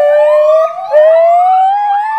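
Gibbon calling: a long whoop rising slowly in pitch, broken about a second in and taken up again as a second rising whoop.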